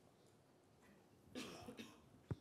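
Near silence, then a short cough a little past halfway through.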